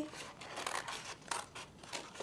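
Scissors cutting through a sheet of paper in a series of short, irregular snips.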